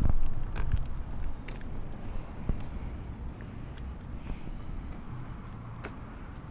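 Bicycle rolling over parking-lot asphalt: a low rumble of tyres and wind on the microphone, with scattered light clicks and a louder bump at the very start.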